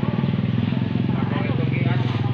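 An engine idling steadily close by, with people talking over it.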